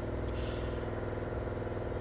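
Steady low mechanical hum with an even drone and no sudden sounds.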